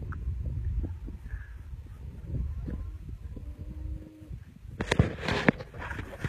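Young buck deer scuffling as it pulls against twine tangled in its antlers, its hooves striking the ground in a few sharp knocks near the end, over a low wind rumble on the microphone.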